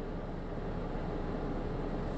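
Steady low hum of a car's interior, heard from inside the cabin.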